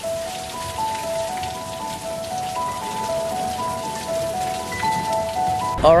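Steady hiss of falling water from an indoor rainforest exhibit's waterfall and artificial rain, under background music: a simple melody of single held notes stepping up and down.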